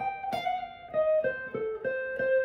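Electric guitar with a clean tone playing a single-note blues lick: about six picked notes stepping mostly downward, part of a phrase moving from the F chord back toward C.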